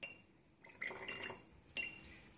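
Dilute hydrochloric acid poured from a measuring cylinder into a glass conical flask: a light glass tap at the start, the liquid pouring in about half a second later, then a sharper ringing clink of glass on glass near the end.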